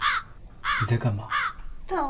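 A string of crow caws, three short calls a little under a second apart, over a man's voice; in a drama of this kind most likely a dubbed-in sound effect.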